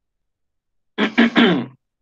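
Silence, then about a second in a man briefly clears his throat once.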